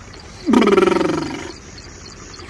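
A person's loud, rough cry of pain that starts about half a second in, falls in pitch and fades out over about a second.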